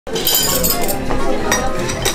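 Plates, bowls and cutlery clinking and clattering as they are gathered up off a table, many quick light knocks.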